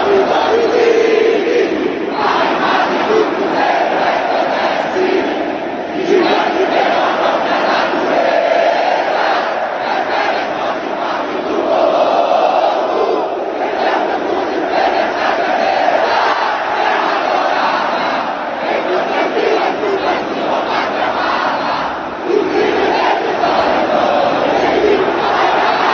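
A packed football stadium crowd singing together in unison with no band or recorded music, loud and continuous: the home supporters singing their club anthem a cappella.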